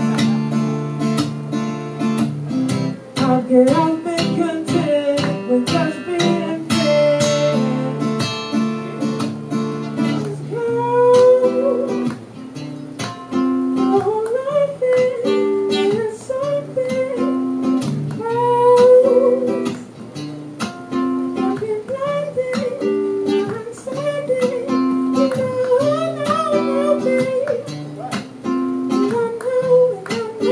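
Acoustic guitar strummed in repeated chords, with a man singing a melody over it, his voice most prominent from about ten seconds in.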